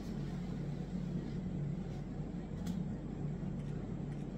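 Steady low hum of background machinery or traffic, with a faint click about two and a half seconds in.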